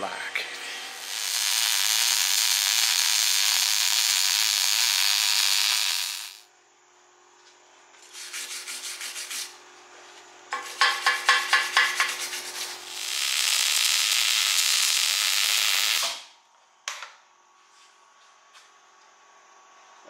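Wire-feed arc welding steel in four runs: a steady frying hiss of about five seconds, a short burst, a run with a rapid, regular crackle, and a last steady pass of about three seconds, with quiet gaps between.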